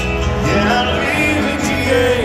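A country band playing live, with guitar and a singing voice over a steady band backing.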